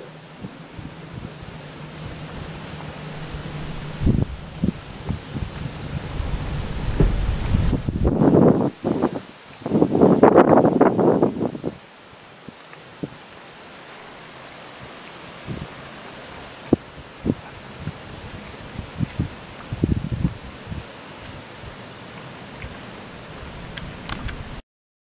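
Wind buffeting the microphone on an open summit, with rustling. Strong gusts rumble from about four seconds in and peak twice near the middle, then ease to a lighter blustering with occasional soft thumps.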